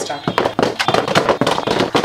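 Plastic-wrapped rolls of sambrani cups knocked and dropped into a clear plastic storage box: a quick, dense clatter of rattling, crinkling knocks.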